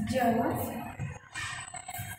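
A woman's voice making drawn-out, wordless vocal sounds, loudest in the first second.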